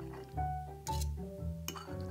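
Background music: a melody of held notes over a bass line, with a few sharp clicks.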